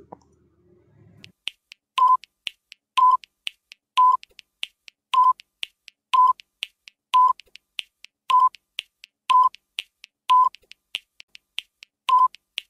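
Quiz countdown timer sound effect: a short, steady beep about once a second, starting about two seconds in, with faint ticking clicks between the beeps.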